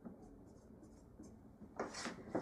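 Dry-erase marker writing on a whiteboard: faint squeaky strokes, with a few louder ones near the end.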